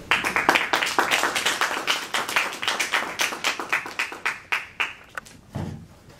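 A small audience applauding: the clapping starts suddenly, holds for about four seconds, then thins out to a few last claps. A short soft thump comes near the end.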